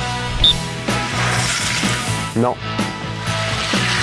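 Background music playing, with one short, high blast of a coach's plastic whistle about half a second in.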